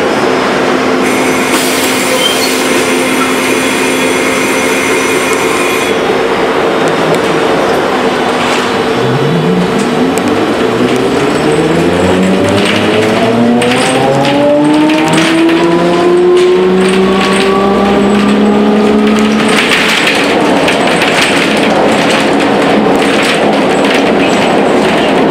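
Electric traction drive of an Ikarus 280T trolleybus heard from inside. A steady hum comes while it stands, with a high hiss for a few seconds near the start. Then a whine of several tones rises steadily in pitch for about ten seconds as the bus accelerates away, and breaks off suddenly when power is cut, leaving road rumble.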